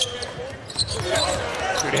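Arena crowd murmur with a basketball being dribbled on the hardwood court, heard as a few short thuds.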